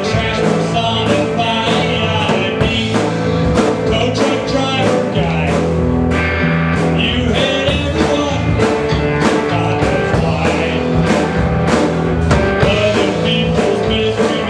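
Live rock band playing: guitar over a steady drum beat.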